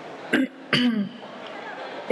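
A woman clearing her throat twice: a short cough-like burst about a third of a second in, then a longer voiced clearing that drops in pitch, followed by faint steady background hiss.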